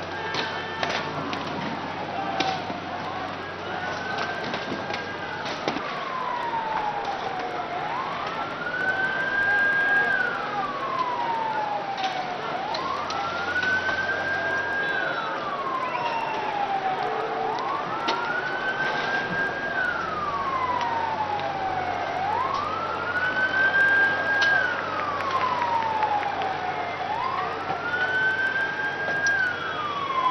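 Emergency vehicle siren wailing slowly: each cycle rises, holds at its top pitch for about a second, then falls away, repeating roughly every five seconds. Beneath it is continuous crowd and street noise with scattered sharp cracks and bangs, most of them near the start.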